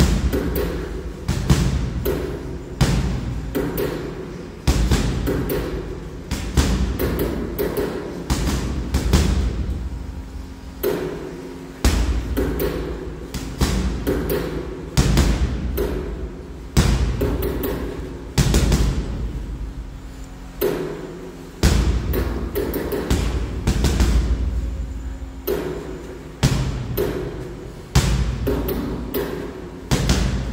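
Gloved punches landing on a hanging heavy punching bag: sharp thuds in quick combinations every second or two, each hit followed by a low, dying rumble from the bag.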